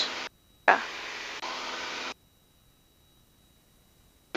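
Steady hiss of Piper Cherokee cabin noise, engine and airflow, heard through a headset microphone on the intercom. It switches on abruptly just under a second in and cuts off to dead silence about two seconds in, as the voice-activated intercom squelch opens and closes.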